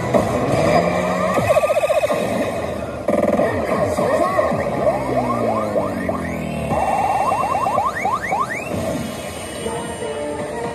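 Kabaneri pachislot machine playing its effect music and electronic sound effects through the cabinet speakers: quick rattling runs of tones and several rising sweeps, the lead-up and fanfare of a bonus being won.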